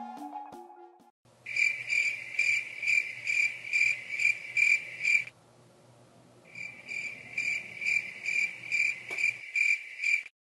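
Cricket chirping in an even rhythm, about three chirps a second, as night-time ambience, with a break of about a second midway and a faint low hum underneath. A short falling tone fades out just before the chirping begins.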